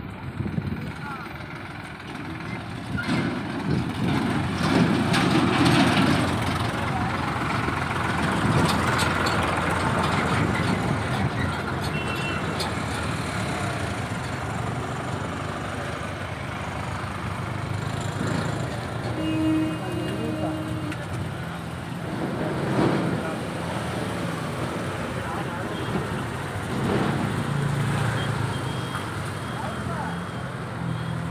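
Roadside traffic: truck and other vehicle engines running and passing, with a short horn toot about two-thirds of the way through and a few brief high beeps. Voices in the background.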